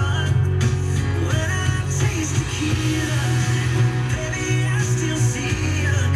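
Country-pop song with guitar and singing playing from a portable boombox radio's speaker.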